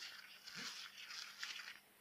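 Faint rubbing and rustling of a paper tissue scrubbed in short, irregular strokes over a stained rubber glove, dying away near the end.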